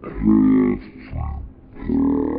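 A man laughing in a deep, growling voice, in a few bursts.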